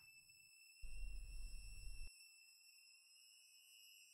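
Faint, steady high-pitched whine made of several thin tones. About a second in, a low rumble comes in for just over a second and cuts off abruptly.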